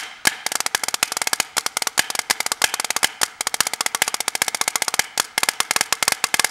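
Drumsticks playing fast rudimental strokes on a Xymox Metro snare practice pad, with loud accents among quieter notes. A metal plate with BBs under the pad rattles with each stroke, giving a snare-drum buzz.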